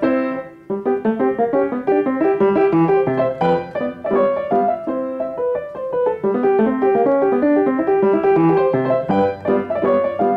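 Solo piano playing a lively classical étude in a fast stream of short, separate notes, with a brief break about half a second in before the notes run on.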